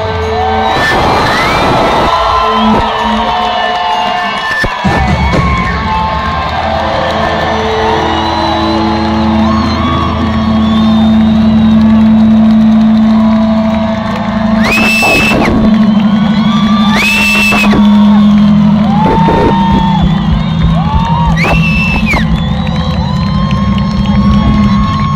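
Live rock band in an arena holding long sustained notes, with the crowd cheering and whooping over the music; several high screams stand out near the middle and towards the end.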